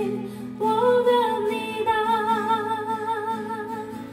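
A woman singing a praise song while accompanying herself on acoustic guitar, holding long notes with a wavering vibrato. A new phrase starts about half a second in, and the voice fades toward the end. She herself calls her voice hoarse.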